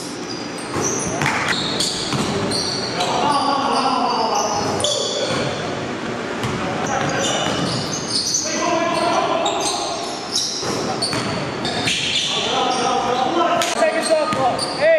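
Basketball game in a gym: a ball bouncing on the hardwood floor with sharp strikes, sneakers squeaking and players shouting to each other, all echoing in the hall.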